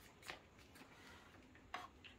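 Near silence: room tone with two faint, brief rustles, one just after the start and one near the end, from hands handling a plastic tail-light lens piece and glue tube.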